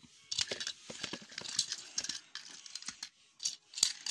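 Irregular clicking and rattling of small hard toy trains being handled close to the microphone.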